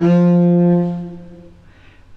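Cello bowing a single F with a marcato attack: the note starts sharply with a fast, heavy stroke from the heel of the bow, then the pressure is released and the note fades over about a second and a half.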